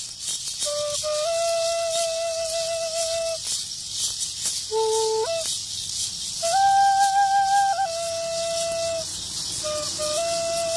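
Gourd maracas shaking in a continuous roll, with a flute playing a slow melody of long held notes that step up and down in pitch.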